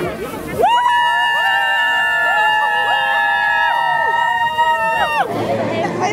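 Several high voices cheering in one long, sustained scream together. They rise in about half a second in, hold for about four and a half seconds with some wavering, and drop off together near the end.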